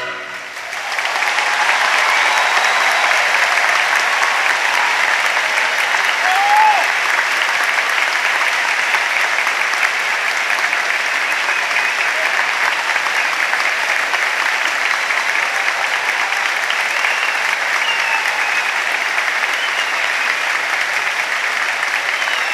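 Concert audience applauding steadily, the clapping starting as the tenor and orchestra's final note ends. A few whistles and calls rise briefly over the clapping.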